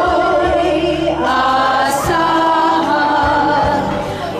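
A group of women singing a slow song together, one into a handheld microphone, holding long notes that change pitch about a second in and again near the middle.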